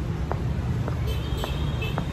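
Steady low rumble of street traffic, with a few faint ticks.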